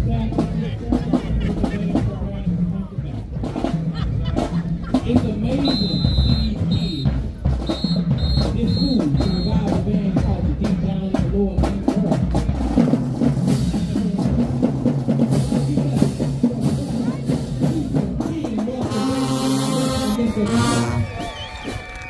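A high school marching band's drumline plays a marching cadence, with dense, steady drum hits and a heavy bass drum. Partway through, a whistle sounds a string of short, evenly spaced blasts, and a brief held chord comes in near the end.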